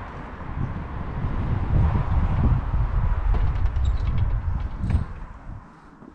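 Wind buffeting the camera microphone: an uneven low rumble that fades out near the end, with a single sharp knock about five seconds in.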